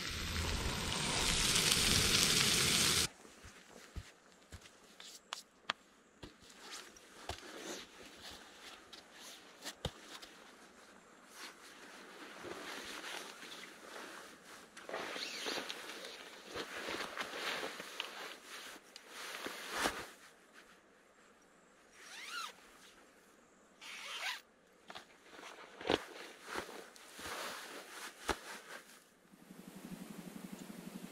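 A steady hiss for about the first three seconds. It cuts off, and then comes a string of short rasping zips and rustles of nylon fabric, on and off: a hammock's mosquito-net zipper being pulled and the hammock fabric shifting as someone settles into it.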